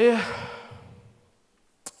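A man's drawn-out "eh" into a handheld microphone, like a sigh, starting loud and falling in pitch as it fades over about a second. A short click comes near the end, just before he speaks again.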